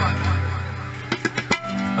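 Low sustained instrument notes die away, then a quick flurry of about five tabla strokes comes a little past the middle, in a lull between sung lines.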